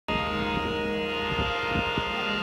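Harmonium holding a steady sustained chord of reedy tones, with a few soft low drum strokes underneath, before any singing.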